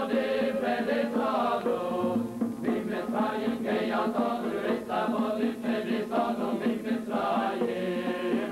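Voices singing a chanted Jewish liturgical melody, a Passover prayer, with phrases that rise, fall and break over a steady low held note.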